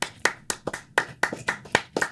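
Hand clapping, a steady run of about five claps a second.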